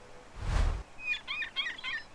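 A whoosh, then about a second of quick, warbling bird chirps, as a cartoon sound effect.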